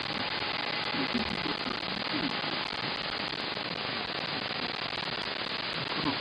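Shortwave receiver audio from a software-defined radio tuned to the 20 m FT8 frequency, 14.074 MHz: steady band hiss and static with faint steady tones from FT8 digital signals.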